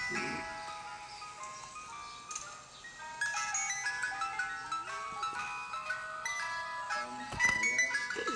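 Ice cream truck jingle: a tinkly melody of short chiming notes stepping up and down, playing without a break. A sharp knock sounds near the end.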